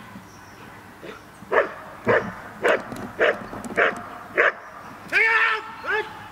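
Belgian Malinois barking at the protection helper in steady, regular barks about every 0.6 seconds, six in a row, then one longer, drawn-out bark near the end.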